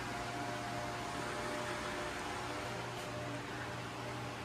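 Steady room tone: an even hiss with a constant low hum and a faint steady whine, like a small motor or appliance running.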